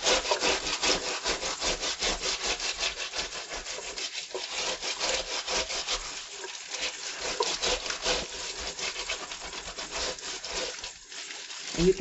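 Vegetable brush scrubbing the rough skin of a pineapple in quick, even back-and-forth strokes, with tap water running over it.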